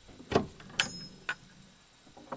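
Metal latch on a small wooden coop door being worked open by hand: a sharp clack about a third of a second in, then a second click with a brief metallic ring and a lighter tap as the door comes open.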